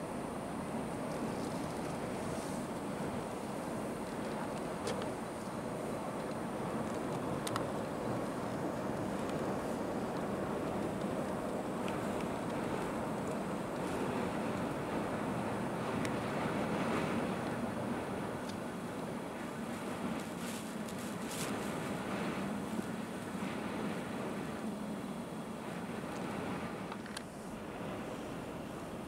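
Steady engine and road noise heard inside a car cabin while driving slowly through a blizzard, with wind against the car and a few faint scattered ticks.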